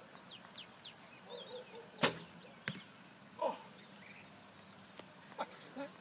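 Hoyt recurve bow shot: a sharp snap of the string on release about two seconds in, followed about 0.7 s later by a fainter knock as the arrow strikes the target. Faint bird chirps come before the shot.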